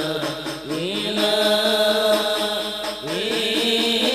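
A group of men chanting a devotional Arabic qasidah together in long drawn-out notes. Each new phrase opens with a rising swoop in pitch, once under a second in and again near the end.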